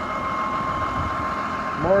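Farm tractor engine idling steadily, with a steady high whine over the engine note.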